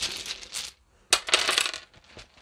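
Small wooden letter tiles clattering as they are tossed onto a hard tabletop: a first clatter, then a sharp click about a second in as more tiles land and skid.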